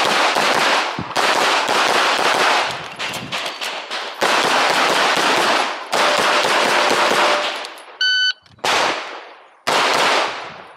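Walther PDP pistol fired in fast strings of shots, each report ringing out, with short breaks between strings. About eight seconds in a short electronic shot-timer beep sounds, and the shooting starts again moments later.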